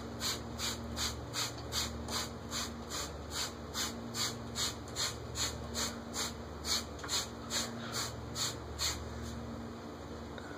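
A regular, high-pitched ticking or chirping pulse, about two and a half beats a second, that stops about nine seconds in, over a low steady hum.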